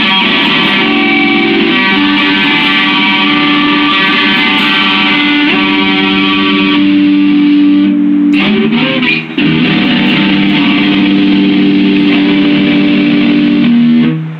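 Stratocaster-style electric guitar playing long held chords through an effect. About eight seconds in there is a short broken passage of quicker notes, then another chord rings out until it dies away at the very end.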